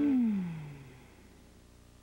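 The last note of a radio station's sung advertising jingle, gliding down in pitch as it fades out over about a second, leaving faint tape hiss.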